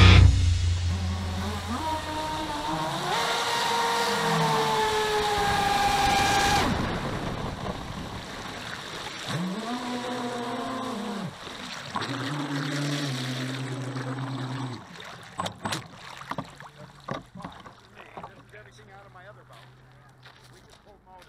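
Brushless electric motors of an RC catamaran whining, their pitch rising and falling with throttle in several separate bursts and growing fainter overall. Scattered short clicks and light splashes follow near the end.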